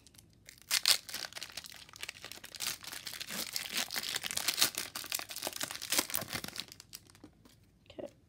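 Trading card pack wrapper crinkling and tearing as it is pulled open by hand, a dense run of crackles that dies down about seven seconds in.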